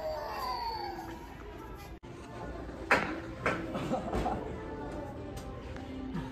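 Indistinct voices over background music, with a sudden break about two seconds in and a sharp knock about a second after it.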